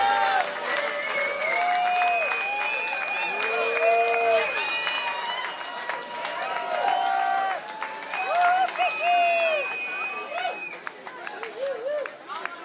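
Audience clapping and cheering with shouts and whoops as a song ends, thinning out near the end. A high steady tone is held for a few seconds, twice, over the cheering.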